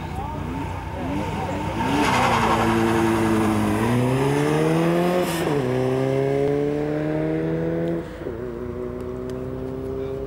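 Ford Sierra Sapphire saloon accelerating hard, its engine pitch climbing, dropping at a gear change about five seconds in, then climbing again before easing off near eight seconds. Tyres squeal as it pulls away in the first few seconds.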